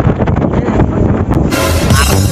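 Steady low rumble of a fishing boat's engine with wind on the microphone. About one and a half seconds in, this cuts to electronic music with a beat.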